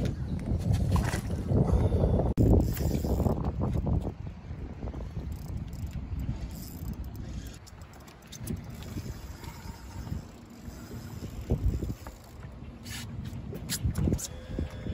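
Wind buffeting the microphone over water lapping at a small boat's hull, loudest in the first four seconds and quieter after.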